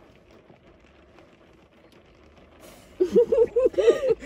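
Faint, low hum of a car interior with the heater on full blast, then a person's voice starting about three seconds in.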